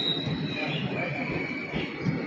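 Indian Railways sleeper coaches rolling past along the platform, their wheels and bogies rumbling and knocking over the track. High wheel squeal sounds over the rumble: one tone fades away at the start, and another, lower squeal rises about a second in.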